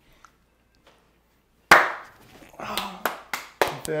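A sudden loud burst a little under two seconds in, then a quick run of sharp hand claps mixed with laughter toward the end.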